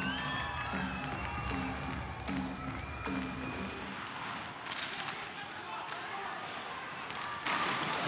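Ice hockey arena ambience: crowd noise with music playing. In the first three seconds a short low note repeats about every three-quarters of a second, and the crowd noise grows brighter and louder near the end.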